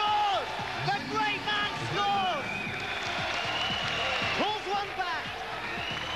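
Players and crowd shouting and cheering in an indoor five-a-side football arena, many voices overlapping, as a goal levels the score. A single high shout or call is held for about two seconds in the middle.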